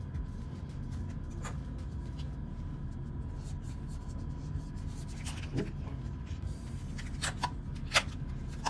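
Handling noise from a plastic headphone ear cup being turned and worked in the hands: rubbing, with a few small sharp clicks about a second and a half in and several more near the end. Under it runs a steady low hum.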